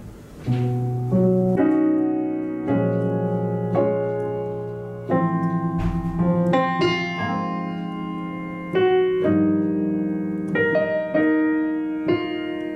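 Piano playing a jazz-style arrangement in rich extended chords (major sevenths, slash chords, a sharp-eleven chord). Each chord is struck and left to ring and fade before the next, with the first chord about half a second in.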